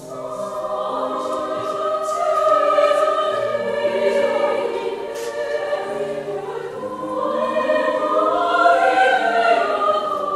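Women's choir coming in together and singing sustained chords in harmony, swelling louder twice.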